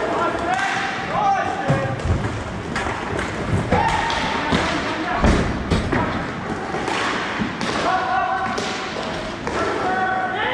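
Inline hockey play on an indoor rink: a string of knocks and thuds from sticks, puck and bodies against the boards, the loudest a thud about five seconds in, with players shouting to each other throughout.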